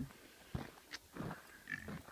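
American Guinea hogs grunting a few short times.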